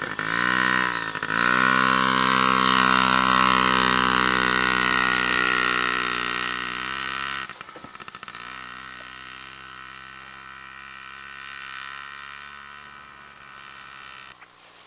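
Small single-cylinder engine of a children's mini dirt bike, revving up as the bike pulls away and running steadily under throttle. About halfway through it becomes much fainter and carries on as the bike rides off into the distance.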